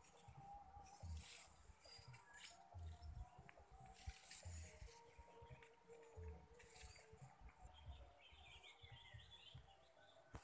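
Near silence: faint outdoor ambience with low bumps from the phone being handled, and a short bird twitter near the end.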